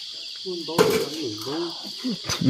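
Steady high-pitched chorus of insects, with a short spoken remark over it and one sharp click about a second in.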